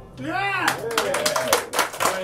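A small audience clapping, with a voice calling out over the clapping about half a second in.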